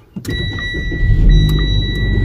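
Car engine cold-started inside the cabin: cranking begins about a fifth of a second in, and the engine catches about a second in and settles into a steady low idle. A steady high-pitched electronic tone sounds alongside, with a few light clicks.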